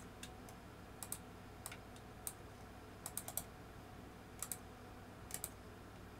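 Computer keyboard keystrokes, faint and scattered: about fifteen short clicks at irregular spacing, several in quick pairs.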